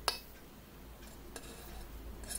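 A metal spoon knocking against a stainless steel pot while stirring a thick sauce. There is a sharp click at the very start and a fainter one about a second and a half in, with little else but low room noise between.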